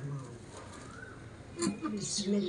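Dove cooing softly in the background, with a brief light knock or clink about one and a half seconds in.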